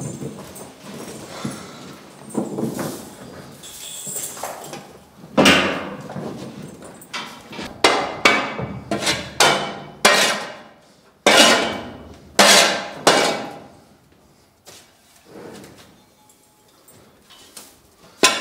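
Repeated scraping strokes of a long-handled tool pushing bedding and dung across a concrete stall floor, about one a second, each starting sharply and fading fast. The strokes thin out and grow quieter near the end.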